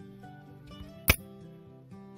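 Soft background music with held, plucked notes, broken once about a second in by a single sharp knock.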